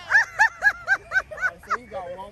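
A person laughing in a quick run of about seven 'ha' pulses, about four a second.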